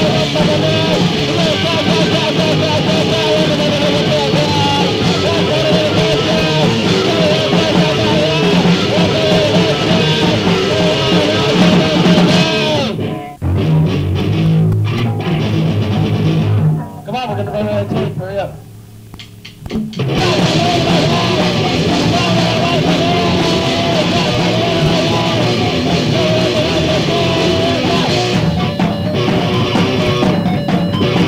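Lo-fi four-track recording of a rock band playing: guitar, bass and drums. About thirteen seconds in the full band drops out, leaving a low riff alone for a few seconds, then a quieter stretch, before the whole band comes back in about twenty seconds in.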